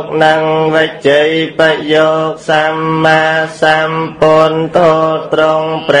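A monk's voice chanting Buddhist verses, each syllable held on a steady pitch in a slow, even cadence, with a low steady hum underneath.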